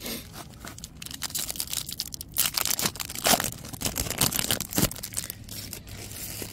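Baseball trading cards being handled: stiff card stock sliding and flicking against itself in a stack, a run of crisp rustles and clicks that gets busier after the first second or so.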